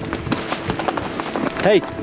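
Horses' hooves clattering irregularly on loose stones and rocky ground under held notes of background music. A rider shouts "Hey!" near the end.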